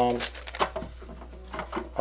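Light rustles of a paper sheet and small clicks of the hollow plastic housing of a Snoopy snow cone machine as it is handled, a string of short taps with no steady sound.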